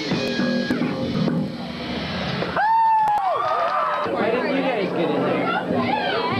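Live rock band music from guitars and drums, thinning out about a second in. About halfway a loud held note sounds for under a second and falls away, then voices talk over the hall's noise.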